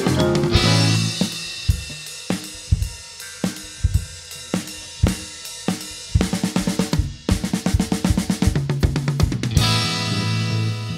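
Progressive rock drum-kit passage: spaced kick and snare strikes with cymbals, then a quicker run of hits, and the full band comes back in near the end.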